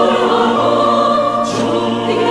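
Mixed choir singing an Iranian folk song in held, many-voiced chords, with a hissing consonant from the singers about one and a half seconds in.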